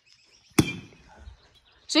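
A baseball bat hitting a rubber ball once, about half a second in: a single sharp crack with a short ring after it. The hit sends the ball out of the yard.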